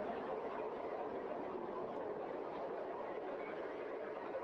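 Steady roar of a Falcon 9 first stage's nine Merlin 1D engines climbing through ascent, heard as an even rushing noise without pulses.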